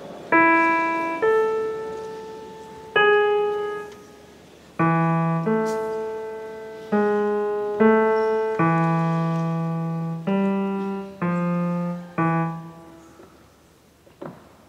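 Piano playing a slow, sparse accompaniment: a few single notes at first, then fuller chords over low bass notes from about five seconds in, each note struck and left to ring away. It stops about a second before the end.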